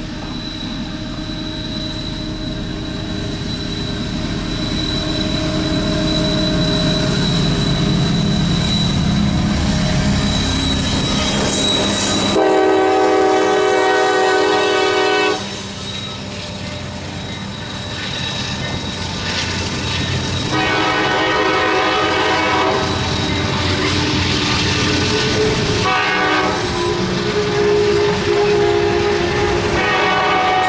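CSX freight train's diesel locomotives rumbling closer and growing louder, then the locomotive horn sounding two long blasts, a short one and a long one starting near the end: the standard signal for a grade crossing. The locomotives' engines and the wheels on the rails run under the horn as the train passes.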